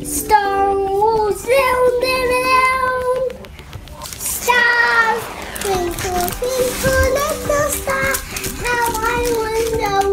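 A young child singing in a high voice, holding long notes that slide up and down in pitch, with a short break about three seconds in.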